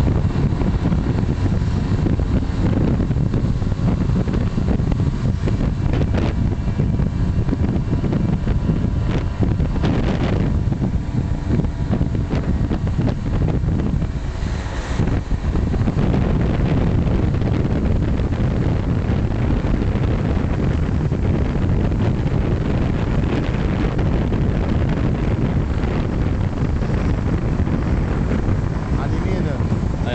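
Motorcycle running on the move, its engine under strong wind noise buffeting the microphone.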